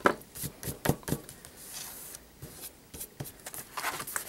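Hands handling a freshly trimmed paper sketchbook and setting a craft knife down by a metal ruler on a tabletop: scattered light taps and paper rustles, with a sharper click right at the start.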